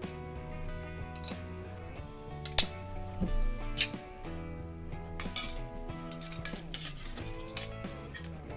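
Several sharp metal clinks and scrapes as unfinished steel knife blanks are picked up and stacked, the loudest about two and a half seconds in, over background acoustic guitar music.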